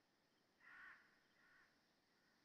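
Two short, faint animal calls about half a second apart, the second quieter, over a quiet background hiss.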